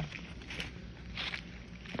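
Soft footsteps on grass and dry leaves, a few faint steps.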